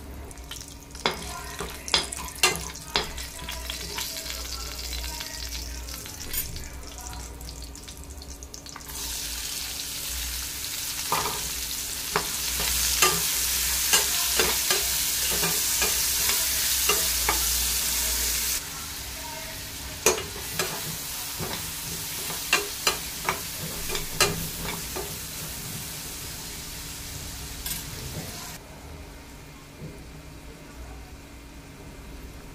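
Whole spices frying in hot oil in a stainless steel pan, with a utensil knocking and scraping against the pan. About nine seconds in a much louder sizzle starts as chopped onions fry and are stirred; it eases off a few seconds later, then stops shortly before the end while the knocks go on.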